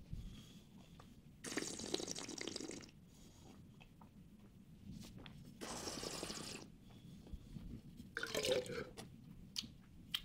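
Red wine being slurped through the lips with air, twice, each draw lasting about a second: a taster aerating a mouthful of wine. A briefer mouth sound follows near the end.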